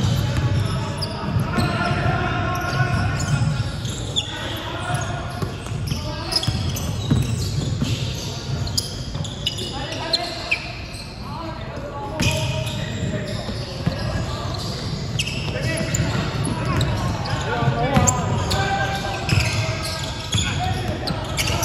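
A basketball bouncing repeatedly on a wooden gym floor, mixed with players' indistinct shouts and calls, echoing in a large sports hall.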